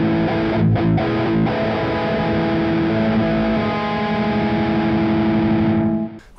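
Distorted electric guitar playing sustained power-chord voicings with a major seventh in place of the octave, which gives a harmonic-minor sound. The chords ring out and change several times.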